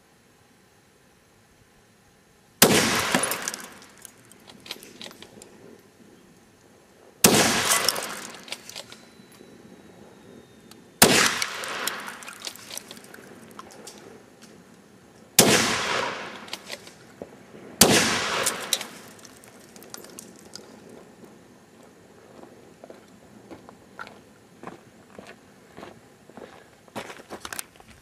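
Five shots from a Mauser 98k bolt-action rifle in 8mm Mauser, fired a few seconds apart, the last two closer together, each trailing off in an echo. The rounds are breaking up a truck brake rotor.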